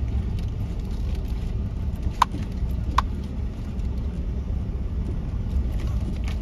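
Ford F-150 pickup driving on a sandy dirt road, heard from inside the cab: a steady low rumble of engine and tyres. Two short high chirps come through about two and three seconds in.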